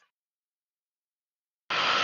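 Dead silence where the sound track drops out, until a hiss of room noise cuts back in suddenly near the end.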